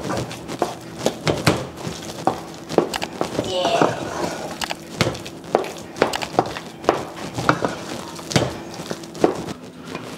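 Wooden spoon stirring and mashing thick yam porridge in a metal pot, knocking and scraping against the pot's sides and bottom in irregular strokes.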